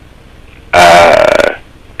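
After a brief pause, one drawn-out, raspy non-word vocal sound lasting under a second, with no words in it.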